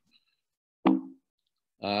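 A pause in a man's talk over a video call: near silence, broken about a second in by one short plop-like mouth sound, a quick click with a brief low hum trailing after it. His voice comes back with an "uh" near the end.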